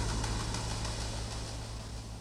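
The tail of a synthesized TV title sting: a deep electronic boom rings on as a steady low rumble with some hiss, slowly fading.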